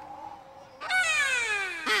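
A high, childlike character voice begins about a second in and holds one long syllable that falls steadily in pitch, a drawn-out 'heeere'.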